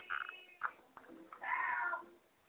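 Faint background sounds over a telephone line, with a high, wavering cry lasting about half a second near the end.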